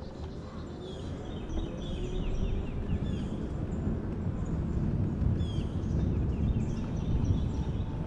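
Mobility scooter travelling along an asphalt street, its motor and tyres making a steady low rumble. Birds chirp in short, high, falling notes throughout.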